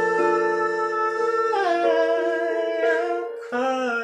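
A man singing one long held note with vibrato over a sustained piano accompaniment, then stepping down to lower notes about halfway through.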